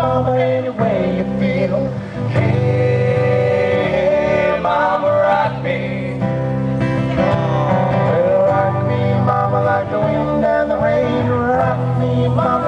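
Live acoustic guitar strummed along with a man singing into a microphone.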